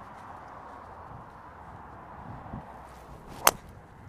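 Golf driver striking a teed ball on a tee shot: one sharp crack about three and a half seconds in.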